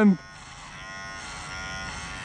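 Electric hair clippers buzzing steadily and quietly, slowly growing louder, just after a loud drawn-out shout breaks off at the very start.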